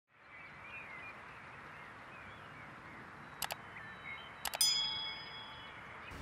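Rural outdoor ambience: a steady background hiss with birds chirping. Two short clicks come a little past halfway, then a few more clicks and a metallic ding that rings out and fades over about a second.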